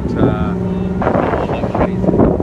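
Heavy diesel lorry engine working hard as it pulls off a river ferry, putting out black smoke: a steady droning tone for about the first second, then a rougher rush. Wind buffets the microphone.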